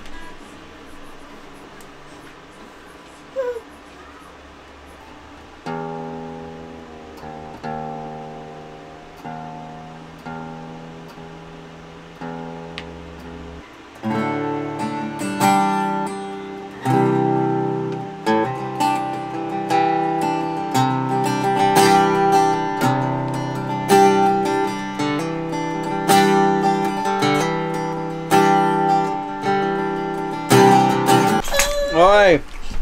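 Acoustic guitar played by hand. After a few quiet seconds come slow chords, each left to ring, and about fourteen seconds in the playing turns louder and busier.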